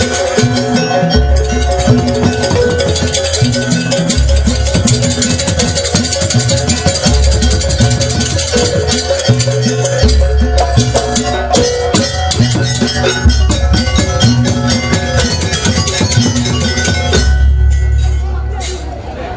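Live Javanese jaranan ensemble playing: hand drums and a bass drum keep a fast, steady rhythm over sustained pitched notes, with deep bass notes that shift every few seconds.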